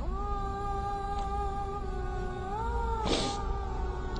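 A man weeping: one long, high, held crying note that rises a little in pitch near the end, followed by a short sharp breath.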